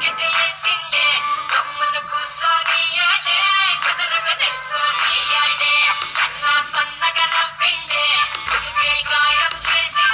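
Telugu film song with a woman singing over a steady beat, played back with a thin, bass-less sound in a small room.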